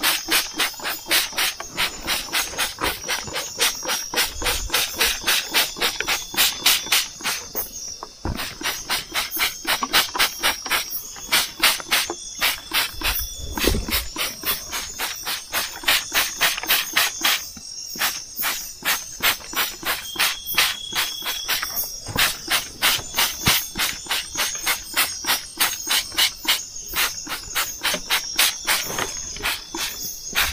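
A plastic hand trigger sprayer squirting over and over in quick runs of short hissing spurts, with brief pauses, as plant leaves are sprayed against leaf-eating pests. Insects trill steadily underneath.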